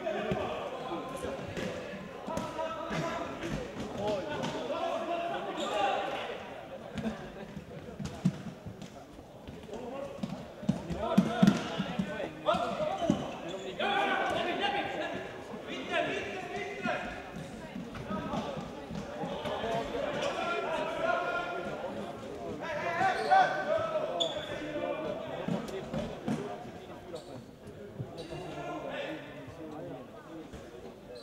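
Futsal ball being kicked and bouncing on a hard sports-hall floor, with sharp thuds that are loudest near the middle, over players' and spectators' voices calling and talking.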